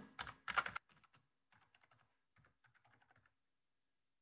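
Computer keyboard typing: a run of quick, faint keystrokes entering a ping command at a terminal, after a couple of louder short sounds at the start. The typing stops a little after three seconds in.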